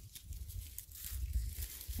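Faint rustling and crackling of flower stems and leaves being handled as alstroemeria stems are pushed into floral foam, with scattered small clicks and a low bumping underneath.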